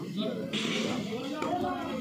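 Background chatter: several people talking at a lower level than the commentary, with a brief hiss of noise through the middle.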